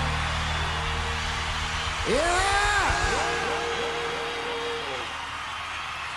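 Live band's last chord held and ringing out, the low bass notes fading away, while the crowd cheers with a burst of overlapping whoops about two seconds in.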